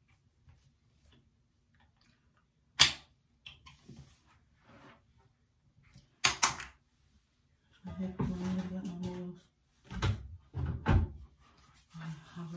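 A few sharp knocks and bumps, the loudest about three seconds in, a quick cluster around six seconds and two more near the end, with a short stretch of low voice about eight seconds in.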